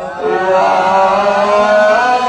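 Men's voices chanting a zikr together, drawing out one long held note after a short breath at the start.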